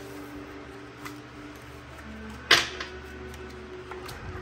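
A card laid down with one sharp snap on a wooden table about two and a half seconds in, with a fainter tap about a second in, over quiet background music with long held notes.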